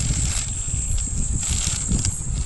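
Thin plastic bag rustling as it is handled and laid flat, over an uneven low rumble of wind on the microphone.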